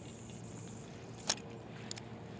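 Spinning reel handled during a cast: a sharp click about a second in, then a smaller click near the end, over a steady low hum.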